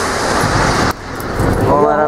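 TOW anti-tank missile just launched: a loud rushing roar from the launch and rocket motor that stops abruptly just under a second in. A lower rumble follows, then men's voices near the end.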